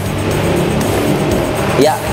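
A steady rushing noise, a transition sound effect, over background music. A short spoken word comes near the end.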